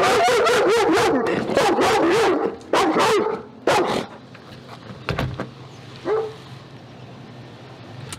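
German shepherd dogs whining and barking, with wavering high whines and sharp barks for the first three or four seconds. After that it goes quieter, with a thump about five seconds in and one more short whine a second later.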